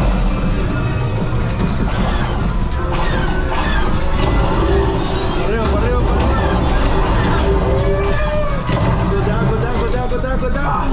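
Millennium Falcon: Smugglers Run ride soundtrack during a space battle: a steady low engine rumble under music, with gliding laser and blaster effects and voices over the ride's speakers.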